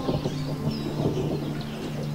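A few short bird chirps over a low, steady hum.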